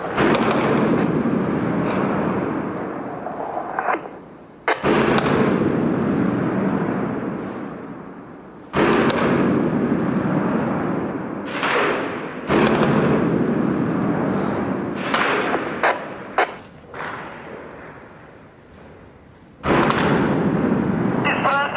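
Heavy weapons fire and explosions in a built-up area. About five big blasts go off a few seconds apart, each a sudden crack followed by a long rolling echo that fades over several seconds. Several shorter, sharper shots sound in between, mostly in the second half.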